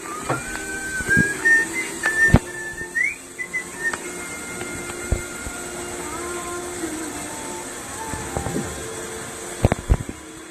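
Zipline trolley pulleys running along the steel cable under a rider's weight, giving a thin whine that rises in pitch over the first couple of seconds as the rider picks up speed. It cuts off about four seconds in, leaving weaker wavering tones and a few sharp knocks.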